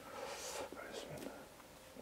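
A woman whispering faintly under her breath.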